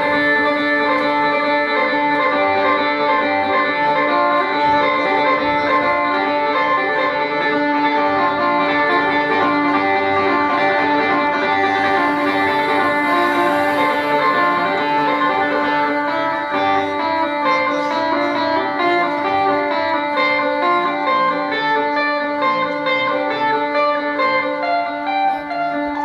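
An Isan pong lang folk ensemble playing live: quick melodic notes over a steady held drone note.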